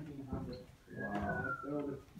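A single short whistle, one thin tone falling slightly in pitch and lasting under a second, about halfway through, with low voices talking around it.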